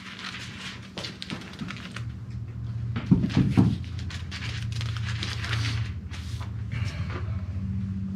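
Thin pages of a large Bible being leafed through and turned by hand: a run of short papery crackles and flips, over a low steady hum.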